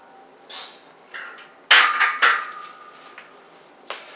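A loaded barbell is racked onto a steel power rack: a sharp metal clang about two seconds in, with ringing, and a second knock just after.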